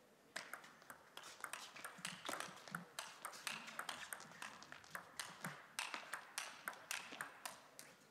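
Table tennis rally: the ball clicking off the players' bats and bouncing on the table in a quick, irregular series of sharp ticks, starting about a third of a second in.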